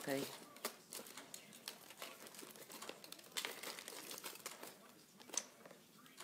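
Scattered short crinkles and small clicks of jewellery pieces and their plastic wrapping being handled, with a louder rustle about three seconds in and again past five seconds.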